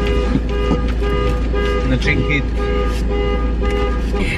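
A car's electronic warning chime repeating about three times a second, over the low rumble of the car inside the cabin.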